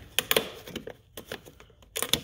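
A handful of sharp, irregular plastic clicks and knocks as small plastic covers on the car's cowl panel are prised off and handled.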